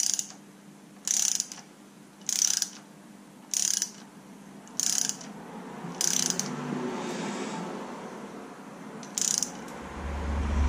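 Hand ratchet clicking in seven short bursts, most about a second apart with a longer pause before the last, as it tightens the bolt that presses a camshaft seal into place with an installer tool.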